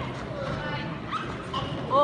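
A few short, high-pitched vocal exclamations with rising-and-falling pitch, the loudest at the very end, over the chatter of a crowd in a hall, as a fighter is thrown to the mat.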